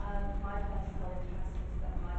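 Speech only: a woman speaking, with a steady low rumble underneath.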